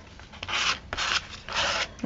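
Three short scraping rubs of an applicator spreading gesso over a sheet of paper, each about a third of a second long and coming about half a second apart.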